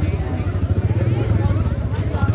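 A motor vehicle engine idling close by with a steady, fast low throb, under the chatter of a crowd.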